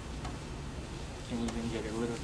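Low steady room hum, then about two-thirds of the way in a man's voice holding one drawn-out sound that leads into speech.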